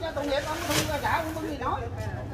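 Several people talking at once in the background, with one brief hissing rustle a little before the middle.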